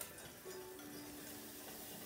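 Butter sizzling faintly as it melts and foams in a saucepan of hot caramelized sugar, a soft hiss, with a light click of the whisk against the pan at the start and a faint steady tone underneath.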